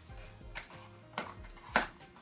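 Small cardboard box being handled and pulled open, with a few sharp crackling snaps about half a second apart; the loudest comes near the end. Faint music runs underneath.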